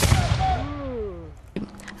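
A ceremonial salute gun (wiwatówka) firing a single blank shot: one sharp, loud blast with a rumbling echo that dies away over about a second and a half.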